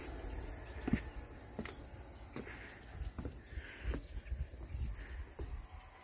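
Crickets chirping in a steady, even high pulse, about four chirps a second, over a continuous higher trill. A few soft thuds of footsteps on a wooden deck.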